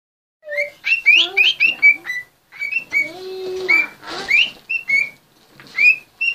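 Budgerigar chirping: a quick run of short, high chirps that sweep up and down, a brief pause a little past two seconds in, then more scattered chirps.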